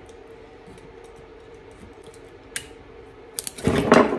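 Small metallic clicks and scrapes of pliers and a screwdriver working nickel strip tabs off the 18650 cells of a power-tool battery pack, ending in a louder clatter as the pack is handled.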